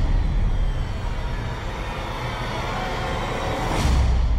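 Movie-trailer sound design: a steady deep rumble under a noisy wash with music beneath, swelling near the end into a whoosh and a deep boom.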